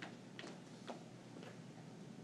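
A quiet room with a few faint, irregular clicks and taps about half a second apart, the first the strongest, as a handheld microphone is handed to an audience member.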